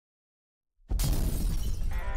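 Dead silence, then about a second in a sudden loud crashing, shattering sound effect that opens an outro music sting.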